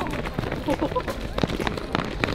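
Footsteps of several people running on concrete, heard as irregular quick slaps and knocks, with faint voices calling in the background.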